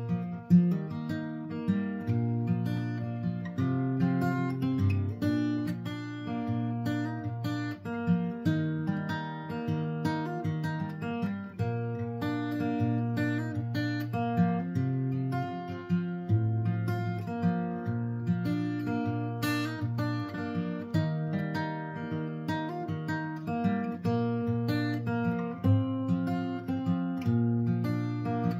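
Cutaway acoustic guitar played solo, strumming and picking chords in a steady, even rhythm.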